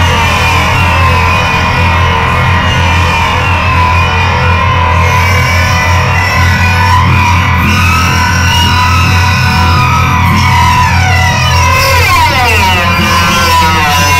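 Live band music, loud and dense, with a strong steady bass. From about ten seconds in, several tones glide downward in pitch.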